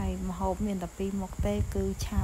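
A voice talking in short phrases, with a faint, steady, high-pitched insect buzz in the grass behind it.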